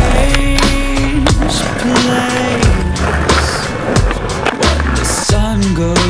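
Skateboard wheels rolling on pavement, with several sharp clacks of the board popping and landing, over a music track.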